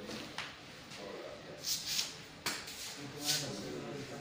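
The chair's writing tablet being swung on its pivot arm: a few sharp clicks and short scraping rustles, the loudest click about two and a half seconds in.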